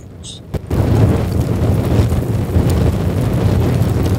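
Explosion sound effect for a chasing ball of fire: a loud, deep, steady noise that starts under a second in and cuts off suddenly at the end.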